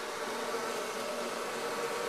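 A mass of honeybees buzzing at close range in an open hive, a steady hum with no breaks.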